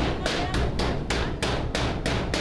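Hammer striking the edge of a sheet-metal door in quick, evenly spaced blows, about four a second, each with a short metallic ring.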